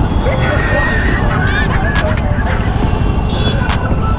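Busy city road traffic at a signal: a steady din of two-wheeler and car engines with short vehicle horn honks.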